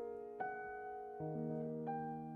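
Slow, quiet piano music: three soft chords are struck in turn, and each is left to ring and fade.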